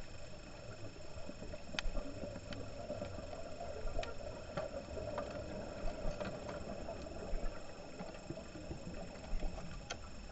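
Underwater ambience picked up through a camera housing: a steady low hiss with a faint high whine, broken by sparse sharp clicks every second or two.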